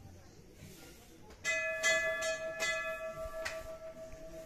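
Metal temple bell struck by hand: a sudden first strike about a second and a half in, then quick repeated strikes, about two or three a second, with the bell ringing on in a steady tone after them.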